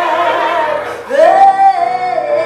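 A woman singing long held notes with vibrato to keyboard accompaniment. One note is held until about halfway through, then she slides up into a louder held note.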